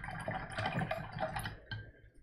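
Paintbrush working oil paint on a canvas: scratchy scrubbing with fine clicks, fading away near the end.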